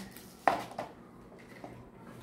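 A light tap on a tabletop about half a second in, followed by a softer one and a few faint ticks: small craft items (a paper cone, a paintbrush) being set down and handled.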